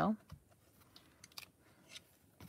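A few light, scattered clicks and taps of hands pressing on and starting to lift the clear acrylic lid of a stamp positioner.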